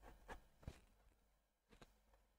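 Near silence, broken by a few faint, short taps: a paintbrush dabbing oil paint onto a stretched canvas.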